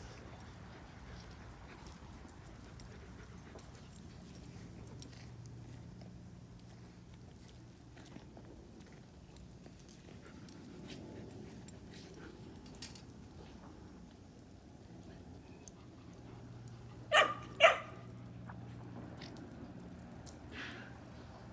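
A dog barks twice in quick succession, two short sharp barks about half a second apart near the end, over a quiet background with faint scattered ticks.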